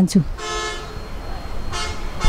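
A vehicle horn honking: a steady honk lasting about half a second, then a shorter one near the end.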